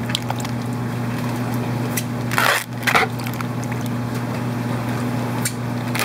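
Water splashing and sloshing as a plastic shipping bag of fish is emptied into a plastic bucket, with two louder splashes about two and a half and three seconds in.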